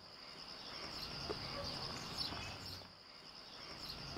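Insects chirring in a steady, high, continuous drone, with a faint outdoor background hiss.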